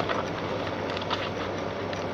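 Steady background noise with a low hum and a few faint clicks.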